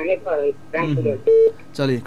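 Two men talking over a telephone line, interrupted about a second and a half in by a short, loud telephone beep.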